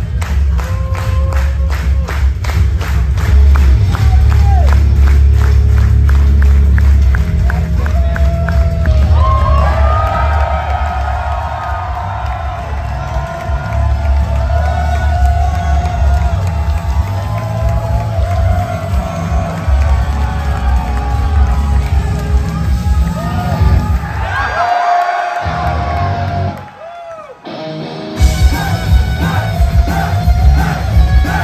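Loud intro music with a heavy, steady bass beat playing through a venue sound system, with a concert crowd cheering and screaming over it. Near the end the sound drops out briefly, then loud rock music comes back in.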